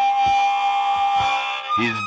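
Blues harmonica, cupped in the hands, holding one long note over a steady low beat in a slow blues; near the end the note breaks off with a short bend.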